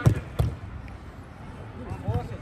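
Two sharp thuds of a football being kicked, about a third of a second apart, the first the louder.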